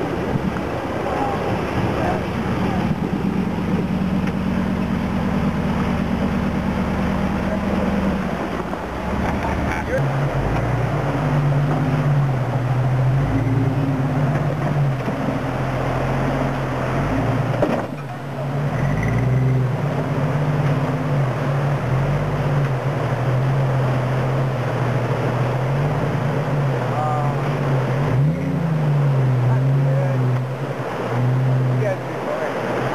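Off-road Jeep engines running at low crawling speed as they drive through a rocky creek, over the sound of rushing and splashing water. About ten seconds in, the engine note changes to a second vehicle whose pitch rises and falls with the throttle as it climbs over the rocks.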